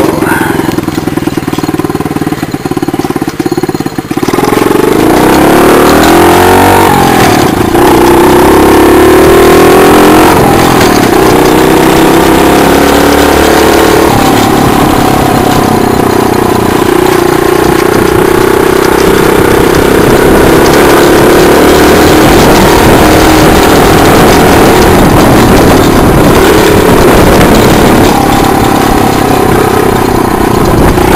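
Mini chopper's 48 cc four-stroke single-cylinder engine pulling away and running under way. It is quieter for the first few seconds, rises in pitch about five seconds in, then keeps rising and falling with the throttle. A heavy rush of wind and road noise runs over it.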